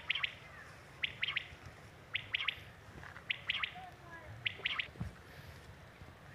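Common quail giving its three-note call (one note, then two quick ones) five times, about once a second, the call that quail netters use to draw birds to the net.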